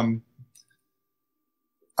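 A man's drawn-out "um" trails off, followed by a pause that is nearly silent apart from a couple of faint clicks about half a second in.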